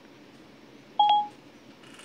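A single short electronic beep from an iPad about a second in: Siri's tone marking the end of the spoken request.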